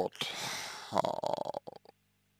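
A man's breathy exhale between phrases, then a short voiced hesitation sound about a second in, followed by a few small mouth clicks.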